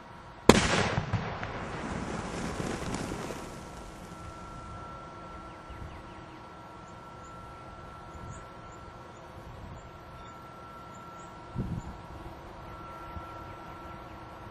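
An explosive charge detonating inside a foam-filled blast mitigation enclosure: one sharp, loud blast about half a second in, followed by a rumble that dies away over about three seconds. A second, smaller thump comes later on.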